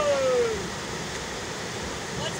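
River rapids rushing steadily over rocks. A person's drawn-out shout with a falling pitch trails off in the first half second.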